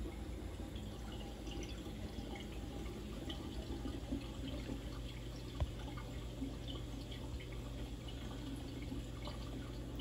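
Water trickling and dripping steadily in a saltwater reef aquarium's circulation, over a low steady hum, with one faint click just past halfway.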